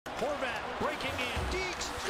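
Several overlapping voices with music underneath, and low thuds about one and a half seconds in.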